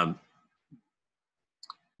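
A man's drawn-out "um" trailing off, then near silence broken by a short mouth click about a second and a half in.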